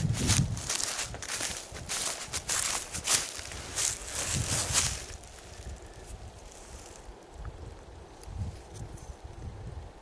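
Dry grass and leaves rustling and crackling with close handling for about five seconds, then much quieter, with faint rubbing of loose soil by hand.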